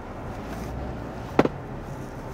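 Steady road and engine noise inside the cabin of a moving Kia K5, with one brief sharp sound about one and a half seconds in.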